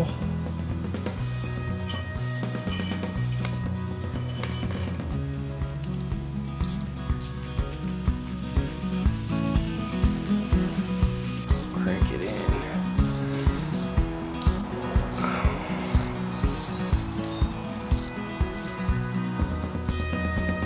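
Background music over a ratchet clicking in quick, even strokes as it turns a new double-nutted stud into an engine's cylinder head. A few metal clinks of wrenches come in the first seconds.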